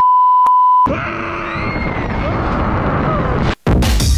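A steady high censor bleep for just under a second, covering a swear word, then the loud rushing wind noise of a roller coaster ride on the microphone with faint yells. Near the end it cuts out briefly and music begins.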